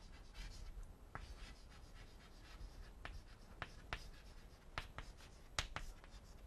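Chalk writing on a blackboard: faint, scattered taps and short scratches as letters are written, coming more often in the second half.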